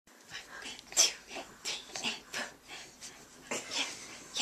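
Excited baby's quick breathy huffs and pants, about two a second, with a louder one about a second in.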